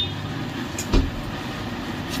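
A silk saree being lifted and spread over a table, its handling heard as a soft thump about a second in over a steady low background hum.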